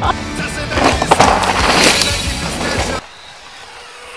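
Downhill mountain bike tyres rolling and skidding over a dirt trail, a loud rushing rattle under music, cut off abruptly about three seconds in.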